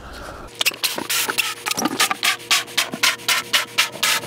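A latex balloon being blown up by mouth, its stretched rubber rubbing and scraping in a quick, uneven series of short scratchy sounds as it swells.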